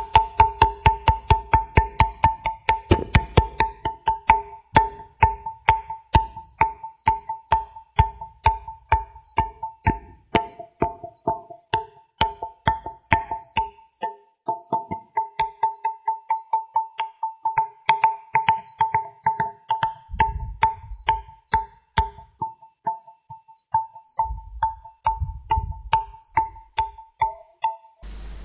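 Granite musical pillars of the Vittala temple struck with fingers and palms, played as a quick tune of about three strikes a second, each strike ringing in a few clear bell-like notes. Deeper thuds from the palm come in now and then, most near the end.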